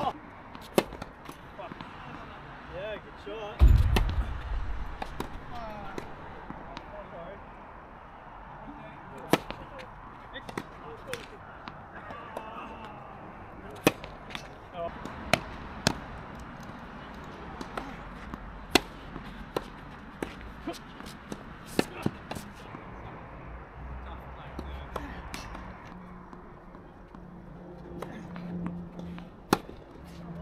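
Tennis balls struck by rackets and bouncing on a hard court during doubles rallies: sharp hits, often about a second apart. A heavy thump comes about four seconds in, and faint voices sound in the background.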